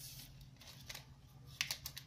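Clear cellophane shrink wrap crinkling and crackling as it is pulled off a small cardboard box, with a quick run of sharp crackles near the end.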